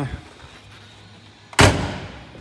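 A Volkswagen Corrado's door being shut: one loud slam about one and a half seconds in.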